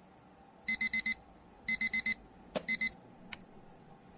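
An electronic alarm beeping in quick groups of four, twice, then a click, two more beeps and a second click.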